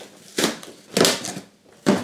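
Large cardboard shipping box being pulled and torn open, three short ripping, scraping noises of cardboard, with the last one just before the end.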